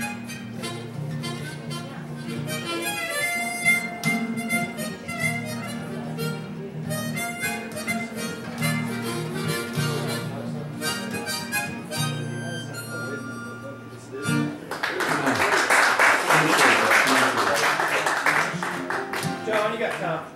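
Guitar with a neck-rack harmonica playing over it, the harmonica holding long notes and chords. The tune stops about fourteen and a half seconds in and is followed by about five seconds of applause.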